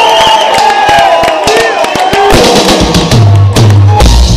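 Live reggae band starting up: drum kit hits over a cheering, whooping crowd, then the bass guitar comes in with deep notes a little over two seconds in.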